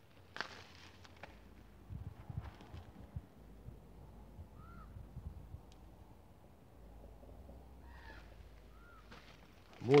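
Quiet open-air background with a few low thumps about two to three seconds in. Two brief, faint bird chirps come about halfway through and near the end.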